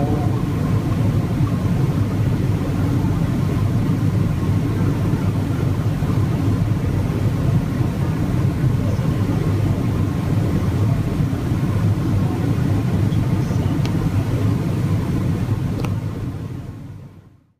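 Steady low background hum, a constant rumble without any tune, as picked up by a phone's microphone.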